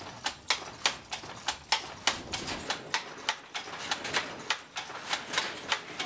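Wooden handloom being worked: a steady run of sharp wooden clacks, about three to four a second.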